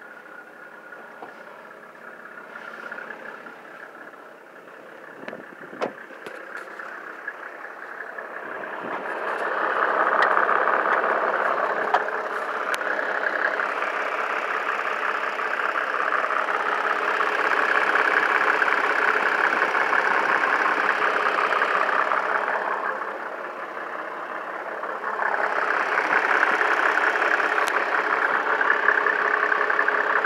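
A 1997 Mercedes-Benz E300's OM606 3.0-litre inline-six diesel idling steadily just after a cold start. It is quieter at first and grows louder about a third of the way in, heard up close from the open engine bay, with a brief drop in level about three quarters of the way through.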